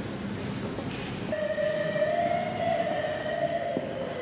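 A single long held note starts about a second in, drifts slightly higher and then steps down lower near the end. It sounds over a low background murmur in a large reverberant room.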